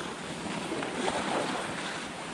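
Steady rushing hiss of skis sliding across packed snow on a traverse, mixed with wind on the camera's microphone, swelling slightly around the middle.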